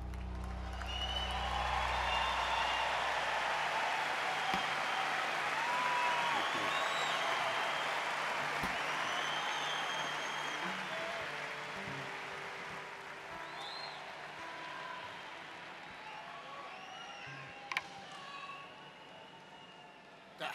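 Large concert audience applauding and cheering, with whistles, while the last chord of the song rings out and fades in the first few seconds. The applause slowly dies away, with a couple of sharp knocks near the end.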